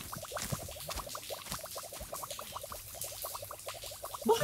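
Cartoon bath-bubble sound effect: a rapid stream of short rising bloops, several a second, with soft low thumps now and then.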